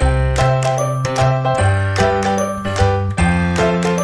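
Intro jingle music: a quick run of struck, ringing high notes over sustained bass notes.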